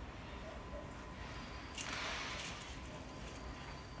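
A hand spreading and levelling loose soil and leaf-compost mix in a drum planter: a faint rustle that swells for about a second around two seconds in.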